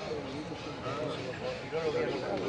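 Indistinct voices of people talking in the background; no clear bird song stands out.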